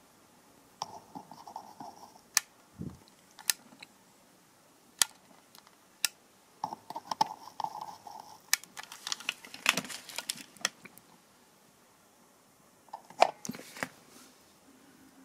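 Soldering iron tip working on a copper board of SMD LEDs coated in rosin flux: scattered sharp clicks as it taps against the terminals, with a few short spells of faint crackling.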